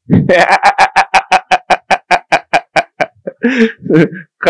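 A man laughing heartily into a close microphone: a quick run of ha-ha pulses, about seven a second, for some three seconds, then a last short burst.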